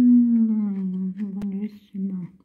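A person humming a long closed-mouth "mmm" that falls slightly in pitch, breaking off near the end into a second short "mm", with a sharp click about one and a half seconds in.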